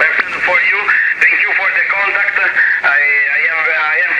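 A man's voice laughing and talking as received over single-sideband on the 10-metre amateur band through a Yaesu FTdx5000 HF transceiver. The audio is thin and narrow, cut off above about 2.7 kHz, over a steady bed of band noise.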